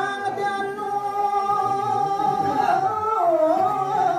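A man singing Balinese pupuh Ginada (sekar alit), a traditional sung verse form, holding long notes that waver slowly, with a dip in pitch about three seconds in.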